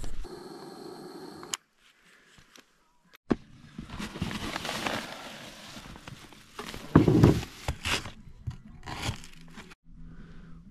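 Rustling and crinkling of bags and plastic packaging being handled in a side-by-side's cargo bed, with a louder thump about seven seconds in. It comes after a short steady hum at the start and a second or so of near silence.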